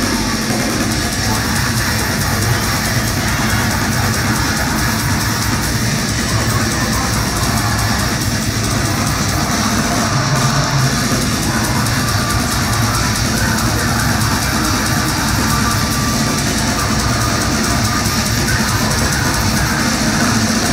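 Live heavy metal band playing loudly: distorted electric guitars, bass and a drum kit in one dense, unbroken wall of sound, heard from the crowd.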